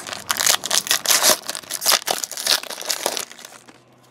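Foil wrapper of a 2012 Certified football card pack crinkling and tearing as it is ripped open by hand: a dense run of crackles that dies away near the end.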